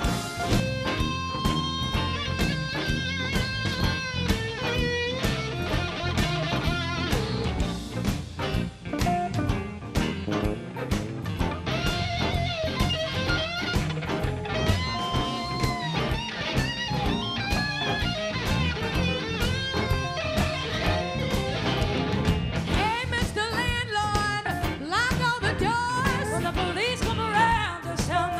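Live electric blues band playing an instrumental break: lead electric guitar lines with bent, held notes over drum kit, bass and organ.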